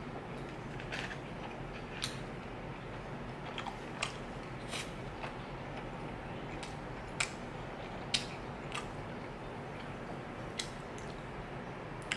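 A person chewing beef teriyaki close to the microphone, with irregular wet mouth clicks and smacks, the loudest about seven and eight seconds in, over a steady background hiss.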